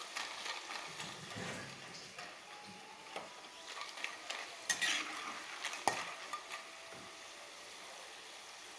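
Jackfruit strips deep-frying in hot oil in an aluminium kadai, sizzling steadily. A metal utensil stirring them scrapes and clinks against the pan now and then, loudest twice around the middle.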